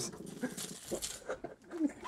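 Short squirts of hot sauce from a toy water pistol spattering onto a sandwich on paper, with brief startled vocal yelps, one of them near the end.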